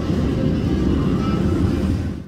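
Steel roller coaster train running along its track: a loud, steady low rumble.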